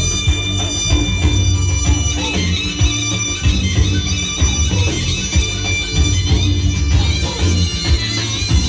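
Live Bulgarian folk music through a concert sound system: a high, reedy wind melody over a steady drum and heavy bass beat.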